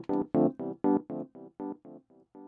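Logic Pro's Vintage Electric Piano playing a repeated chord through a tape delay, about four strikes a second. Over the second half the repeats grow steadily fainter as the delay echoes die away.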